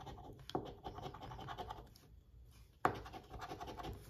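Coin-shaped metal scratcher tool scraping the coating off a paper scratch-off lottery ticket in quick, rasping strokes, with a short pause a little past halfway before the scratching starts again.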